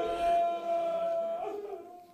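A faint, long, high-pitched wailing cry from a mourner in the gathering, wavering slightly in pitch and fading out near the end.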